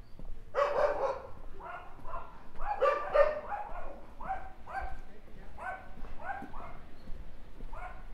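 A dog barking repeatedly, about a dozen short barks, loudest and densest in the first few seconds, then lighter barks at a steady pace, with one more near the end.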